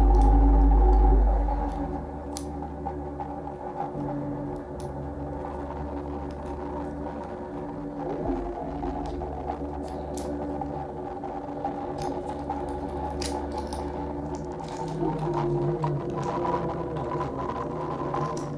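Free improvisation on live electronics and objects. A loud deep bass drone drops away about a second and a half in, leaving several held, overlapping mid-range tones. Scattered small clicks and crackles sit over the tones.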